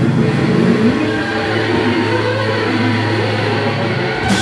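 Electric guitar and bass ringing out in a loud, sustained drone with the drums stopped. A steady low bass note holds from about a second in, while guitar tones waver and bend above it.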